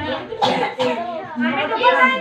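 Overlapping voices of children and women talking and calling out, with two short, sharp noisy bursts about half a second in.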